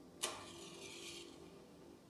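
A match struck and flaring: a sharp scrape about a quarter-second in, then about a second of hiss as the head burns up, fading. Heard from a film soundtrack through a TV's speakers.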